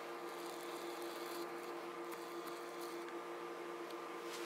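NEMA 17 bipolar stepper motor stepping under an L298 driver, giving a faint, steady whine of a few held tones, with a few faint high clicks.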